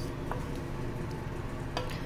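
Wooden spatula stirring thick, cooked black-chickpea curry in an aluminium pressure cooker: a soft, wet scraping and squelching, with a light knock near the end.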